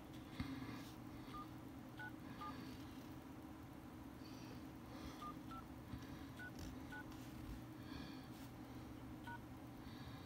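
Samsung Galaxy A50 dialer keypad tones: short two-tone touch-tone beeps, about eight of them at uneven intervals, as a hidden service code is keyed in digit by digit. A single soft thump sounds about half a second in.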